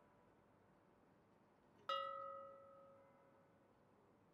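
A single stroke of a church bell about two seconds in, ringing with several clear tones that fade away over about two seconds.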